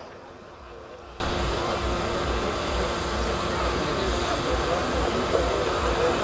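Steady outdoor background noise with a low uneven rumble and a faint steady hum. It cuts in abruptly about a second in, after a quieter start.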